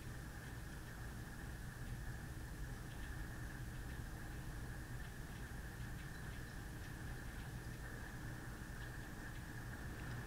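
Quiet room tone: a steady low hum and hiss, with a few faint ticks.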